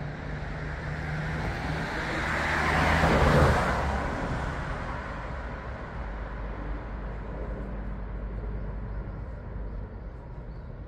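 A road vehicle passing close by, its engine and tyre noise swelling to a peak about three seconds in and then fading away, with a low engine rumble underneath afterwards.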